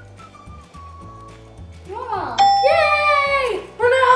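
A bell-like 'ding' chime sound effect rings for about a second, halfway in, marking a point scored in the game, over excited girls' voices squealing with rising and falling pitch. Soft background music plays underneath.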